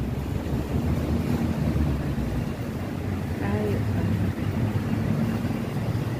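Steady low rumble of city street traffic with engine hum, with wind buffeting the microphone.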